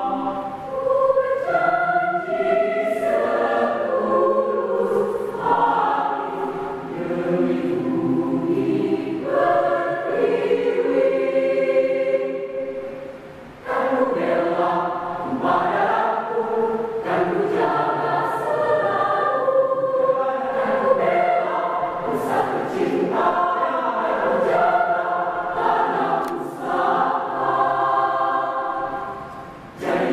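A mixed choir of women's and men's voices singing in harmony, in sustained swelling phrases. About halfway through the sound falls off into a short pause, then the full choir comes back in loudly.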